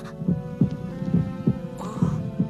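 Cartoon heartbeat sound effect: low, soft thuds in a repeating lub-dub rhythm, over held music notes.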